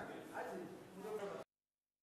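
Faint room ambience with a brief, faint distant voice, cutting off abruptly to dead silence about one and a half seconds in.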